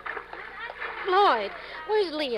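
Swimming-pool background sound effect: water splashing and voices calling out, with one loud rising-and-falling call about a second in. The sound is limited in treble, as on an old broadcast transcription.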